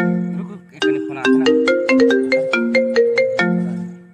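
Mobile phone ringtone playing a quick melody of bright, plucked-sounding notes, the phrase repeating after a short break about half a second in. It cuts off near the end as the call is answered.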